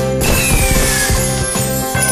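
Slot-machine game music with jingle bells and a steady beat, with a loud sound effect about a quarter second in: a noisy sweep with a falling tone that fades over about a second, as the free-spins bonus is triggered.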